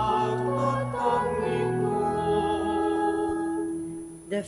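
A slow sung hymn: voices with sustained accompaniment, ending on one long held note that fades out near the end.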